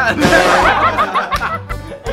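A group of men laughing together, strongest in the first second, over background music with a steady low beat.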